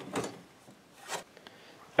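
Faint handling noise from hands working at a snowmobile's secondary clutch after fitting the drive belt: a light click just after the start and another about a second in, with soft rubbing between.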